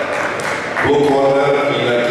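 Hall background noise, then from about a second in a man's voice with long, drawn-out tones, ringing in a large hall.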